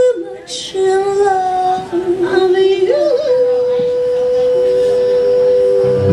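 Two female jazz vocalists singing in harmony: one holds a long, steady high note throughout while the other sings a lower line beneath it that dips in pitch and comes back up.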